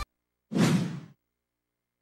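A single whoosh sound effect for a TV station ident transition, starting sharply about half a second in and fading out over about half a second. The rest is dead silence.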